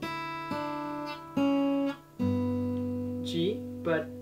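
Steel-string Takamine acoustic guitar fingerpicked over a held D chord: four single notes are plucked in the first two seconds, each left ringing, then a quick trill on the top strings comes near the end.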